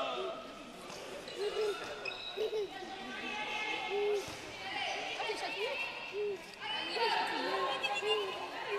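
A handball bouncing on an indoor sports-hall floor, with spectators' voices echoing in the hall.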